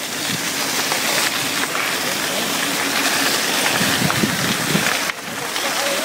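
Mountain bike riding fast down a dusty dirt trail: a steady rush of wind on the handlebar camera's microphone mixed with tyre noise on loose dirt, dipping briefly about five seconds in.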